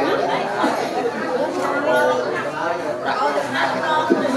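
Several people talking at once: overlapping conversational chatter among a seated group, with no single voice standing out.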